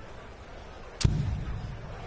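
A steel-tip dart striking the dartboard about a second in, picked up by the board microphone as one sharp hit followed by a short low boom. The dart glances off the barrel of the dart already in the board.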